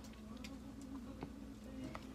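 A few faint clicks from a plastic water bottle being handled, over a low steady hum of room tone.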